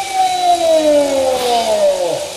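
An announcer's long drawn-out shout, one held call sliding steadily down in pitch: a cry to the crowd for applause.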